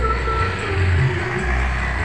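Low, uneven rumble of wind on the microphone, with a vehicle running, while moving along a street.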